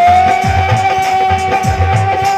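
Live Indian folk devotional music: one long held note over a drum beating a steady pulse.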